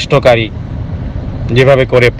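A man lecturing in Bengali, with a pause of about a second in the middle, over a steady low background rumble.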